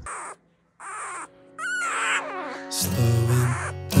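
A newborn puppy's short, squeaky cries: a few brief sounds, one a bending high squeal about a second and a half in. Then guitar-backed music starts near the end.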